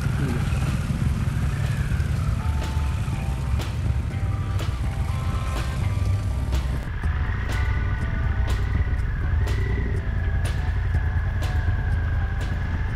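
Background music with a steady beat over the low sound of a group of Harley-Davidson Pan America motorcycles riding off slowly one after another.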